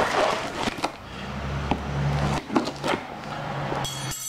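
Cardboard compressor box being handled and shifted on a tile floor: rustling and scraping for about the first second, with a few clicks. A low steady hum follows until near the end.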